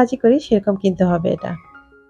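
A woman's voice over soft background music; about a second and a half in the voice stops, leaving a few held music notes.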